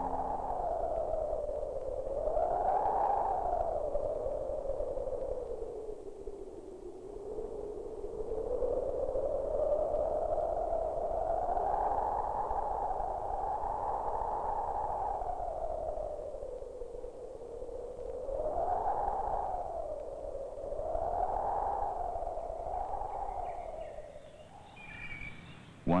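Eerie electronic soundtrack tone that swoops slowly up and down in pitch, rising and falling several times with one long swell in the middle, then fading away near the end.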